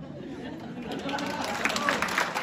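Audience murmuring, then applause starting about a second in and building.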